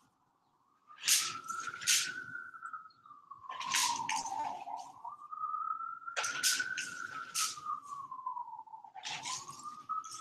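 Watercolor paint flicked from a brush onto a large sheet of paper: sharp splats in groups of two or three every couple of seconds. Behind them a wailing tone rises and falls slowly.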